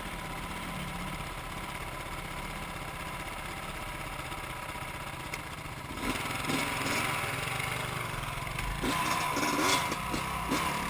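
Dirt bike engine idling steadily, then from about six seconds in it is revved in short bursts as the bike moves off into the river, with water splashing; the loudest revs come near the end.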